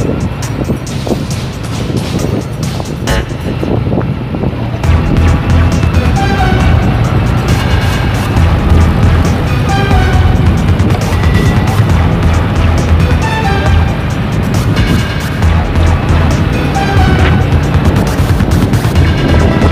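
Background music laid over the engine and road noise of open-top Volkswagen Type 181 (Safari) cars driving, their air-cooled flat-four engines running steadily.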